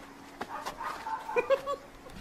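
A person's short, high-pitched vocal yelps, a few quick calls close together about a second and a half in, after a single sharp crack near the start.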